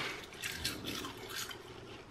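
Faint crackling and wet mouth clicks of someone chewing a crisp roasted seaweed snack sheet.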